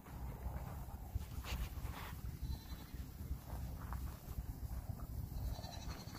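Goats bleating faintly over a steady low rumble.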